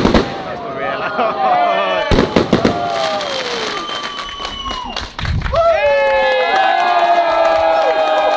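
A cluster of firework bangs in the first three seconds as the display's last bursts go off, then a crowd of spectators cheering with long, drawn-out whoops from about halfway on.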